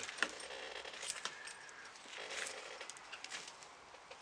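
Faint scattered clicks and rustles over quiet outdoor background.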